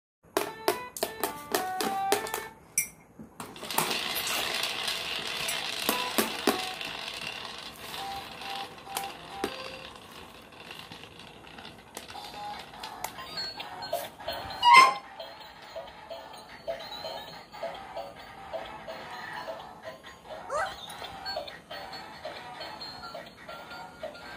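Tinny electronic tunes played by battery-operated musical toys, including a light-up toy drum, with a quick run of stepped notes at the start and a pulsing melody later on. One loud knock comes a little past the middle.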